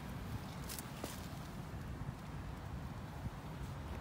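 Low, steady outdoor background rumble, with a couple of faint clicks about a second in.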